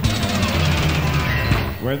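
Live rock band playing an instrumental passage between sung lines, with a sharp accent right at the start. The singing comes back in near the end.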